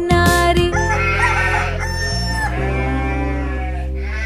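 A rooster crowing one long cock-a-doodle-doo that starts about a second in, over a steady musical backing.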